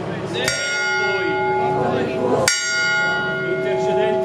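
Church bell tolling: two strokes about two seconds apart, each ringing on with a long, many-toned hum.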